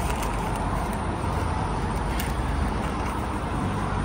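Steady rumble of road traffic with general street noise.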